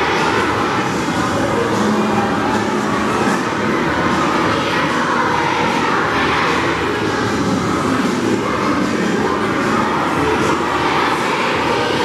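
A large group of children singing a Christmas carol together, heard as a loud, steady, blurred wash of voices.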